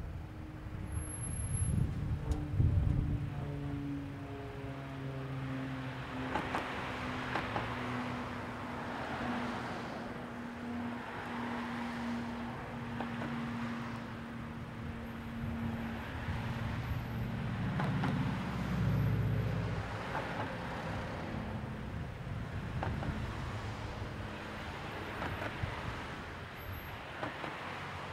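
Road traffic at an intersection: a vehicle passes close by about two seconds in. Then a nearby car's engine idles with a steady low hum while other cars pass with swells of tyre noise, and a louder vehicle goes by about two-thirds of the way through.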